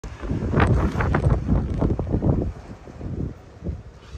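Wind buffeting the microphone in strong irregular gusts, a low rumble that is loudest for the first two and a half seconds and then drops away to a lighter rumble.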